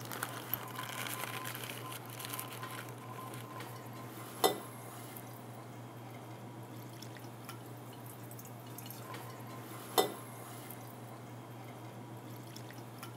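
Faint pouring and dripping of liquid from a glass jar into a coffee-filter-lined funnel, trickling through into the jar below. Two sharp clicks, about four and a half and ten seconds in.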